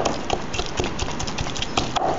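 Wooden pestle knocking against a glazed ceramic mortar while pounding a wet herb pesto: repeated, slightly irregular knocks, about four or five a second.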